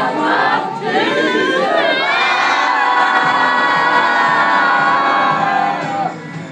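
A group of young voices singing together, loudly, rising into one long held note for the last four seconds that breaks off just before the end.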